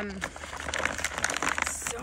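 A fertilizer bag crinkling as it is handled and worked open by hand, a dense run of small crackles.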